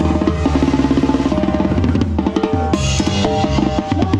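Tarolas played with sticks in a fast roll of rapid strokes through the first half, then accented hits, over a live banda's horns and tuba.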